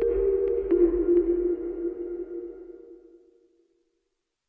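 Closing music sting: a couple of low held tones, with a few faint ticks early on, that slowly fade out and are gone by about three and a half seconds in.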